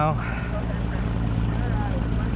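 Outboard motor running steadily at trolling speed, a constant low hum under the rush of water and wind.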